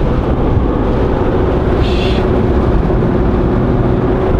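Engine and tyre noise heard inside the cabin of a C6 Corvette Z06 cruising at a steady speed, its 7.0-litre LS7 V8 giving a steady drone under the road rumble.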